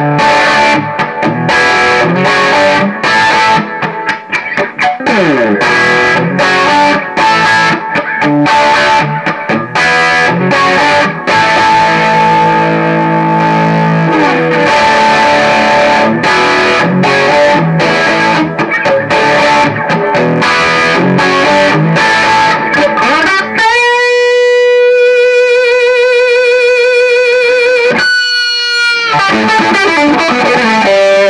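Overdriven electric guitar played through the Gemtone ON-X8, an 8-watt EL84 tube amp head with its gain cranked and master turned down, picking lead lines and chords. Near the end one note is held for about five seconds, wavering slightly, before sliding away.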